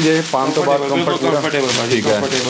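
A man talking continuously. No other sound stands out.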